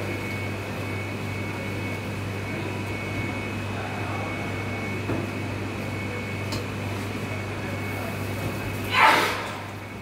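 Steady electrical hum of kitchen equipment, with a short, loud hiss about nine seconds in that fades within half a second.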